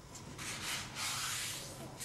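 A sheet of thick paper being folded and its crease rubbed down along the fold, a dry rubbing swish that starts about half a second in and lasts about a second and a half.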